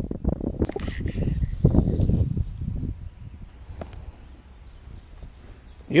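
Wind gusting over an action camera's microphone, a loud uneven rumble for the first three seconds that then eases to a faint steady outdoor background. A brief hiss about a second in.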